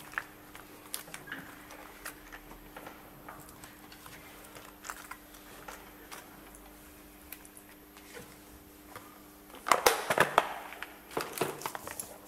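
Small clicks and rattles from a clear plastic parts box and small tools being handled on a cluttered worktable, with a louder burst of rattling clatter about ten seconds in and a shorter one near the end. A faint steady hum runs underneath.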